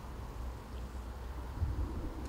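Steady low wind rumble on the microphone, with no distinct event.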